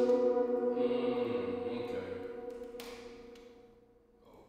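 Music with a sustained, choir-like drone of steady held tones, fading out gradually to near silence, with one brief sharp hit near the end.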